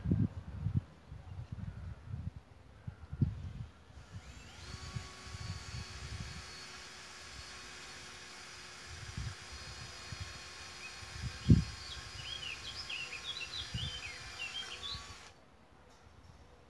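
Welded wire mesh knocking and rattling against a metal fence post as it is handled, with one sharp knock later on. A steady hum of several tones, like a distant motor, starts about four seconds in and cuts off just before the end, and birds chirp briefly near the end.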